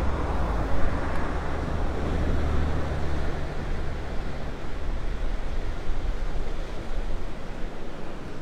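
Wind buffeting the microphone over the wash of surf, with a faint drone from jet skis and an inflatable patrol boat running out on the water.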